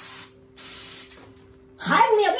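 Small handheld fire extinguisher discharging in two short hissing bursts, each about half a second long, the second starting about half a second in. Near the end a voice breaks in loudly.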